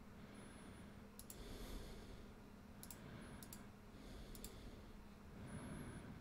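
Faint computer mouse clicks, each a quick double tick, four or five of them spread across a few seconds as slides are clicked through, over a steady low electrical hum.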